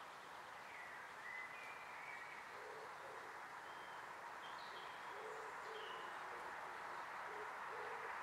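A wild bird's low cooing or hooting call, short notes repeated in a steady series through the second half, over a constant outdoor hiss, with a few brief high chirps of small birds in between.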